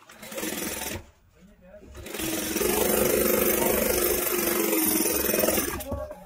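Industrial lockstitch sewing machine stitching a leather steering wheel cover. It runs in a short burst of about a second, stops briefly, then runs steadily for about three and a half seconds with a fast needle rhythm before stopping near the end.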